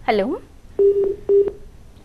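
Telephone ringing tone over the phone line: two short, steady low beeps in quick succession, the double-ring pattern of a call ringing through.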